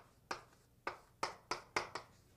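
Chalk tapping and knocking against a blackboard while writing: about six sharp clicks in an uneven rhythm, closer together in the second half.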